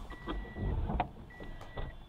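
A vehicle's electronic warning chime: a single high beep about half a second long, sounding twice, evenly spaced over a low engine rumble, with a sharp click about a second in.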